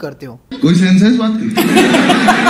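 Loud laughter starting about half a second in, first one long laughing voice, then fuller, choppier laughter from about a second and a half.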